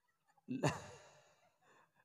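A man's sudden, short, breathy voiced exhalation about half a second in, trailing off within about half a second.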